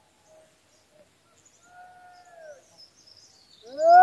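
A person's voice calling in long held notes. It is mostly quiet, with one faint drawn-out call in the middle that falls in pitch at its end, and a louder call rising in near the end. Faint high chirps sound in the background.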